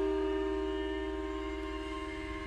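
Suspended gongs and bells ringing on after being struck, several overlapping steady tones slowly fading, one of them pulsing quickly. A low steady hum sits underneath.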